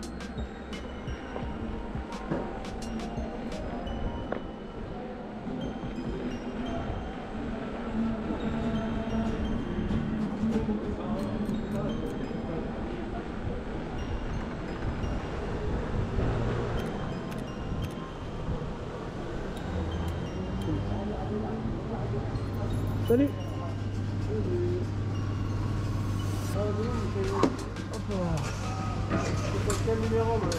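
Indistinct voices and faint music over a low steady rumble. A steady low hum sets in about two-thirds of the way through.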